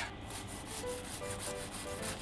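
Kitchen knife sawing through the crisp crust of a deep-fried bread sandwich on a cutting board: a run of dry crunching and scraping. Faint background music sits underneath.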